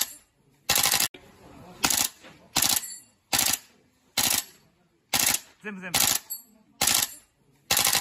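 GHK Mk18 gas blowback airsoft rifle running on CO2 with a heavy buffer, firing repeatedly: about ten sharp cracks of gas release and bolt cycling, spaced unevenly and a little under a second apart.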